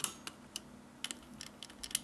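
Keys of a vintage calculator clicking lightly as the '2' key is pressed again and again, several short clicks at an uneven pace.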